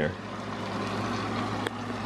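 Banana, caramel and coconut-milk sauce sizzling and bubbling steadily in a hot frying pan as dark rum is poured into it, with one small click near the end.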